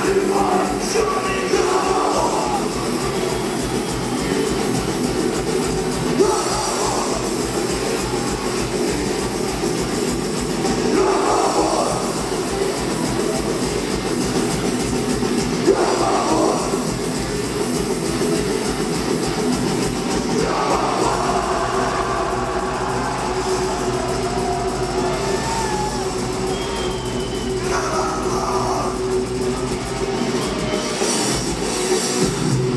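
Live heavy metal band playing at full volume: distorted electric guitars, rapid drumming and vocals that come in every few seconds, recorded from the crowd in a hall.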